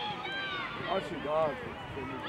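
Several short shouted calls from voices on a football pitch during play, loudest about a second in.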